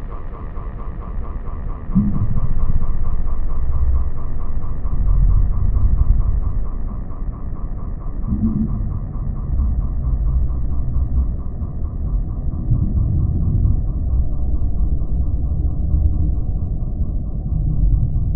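Low, muffled rumble with the higher sounds filtered away, swelling about two seconds in and again about eight seconds in.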